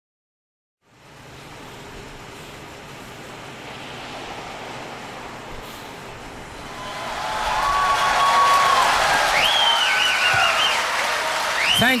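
Concert audience applauding, fading in after a second of silence and swelling about seven seconds in, with several loud whistles from the crowd over the clapping near the end.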